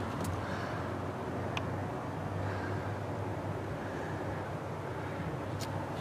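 Steady low background rumble with a faint hum, broken by a few faint light clicks.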